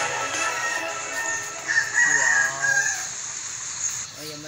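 A rooster crowing once, about two seconds in, a held high call lasting about a second, over quiet background music.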